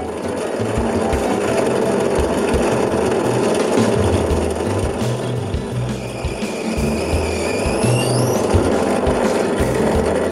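Bench drill press running and drilling small blade-entry holes into a wooden block. A whine rises in pitch from about six to eight seconds in. Background music with a beat plays throughout.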